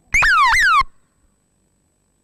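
Two quick, loud electronic tones, each sliding downward in pitch, one straight after the other and over in under a second.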